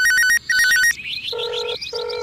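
Electronic telephone-style ringing: two short warbling rings in the first second, then two flat, lower beeps near the end.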